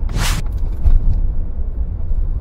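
A loud, steady deep rumble with a brief hissing whoosh near the start.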